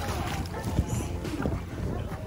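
Swimming-pool water splashing and churning just after someone has jumped in.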